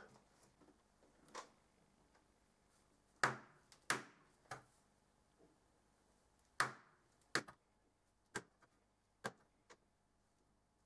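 A pen tip tapping marks onto a polycarbonate sheet: about ten short, sharp taps at uneven intervals, the loudest a little past the third and fourth seconds and halfway through.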